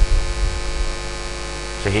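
Steady electrical mains hum from the microphone and sound-system chain, with a low drone and faint higher overtones, during a gap in speech.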